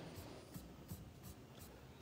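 Faint handling noise: a few soft taps and scratchy rustles over a quiet room, as someone leans in to look something up.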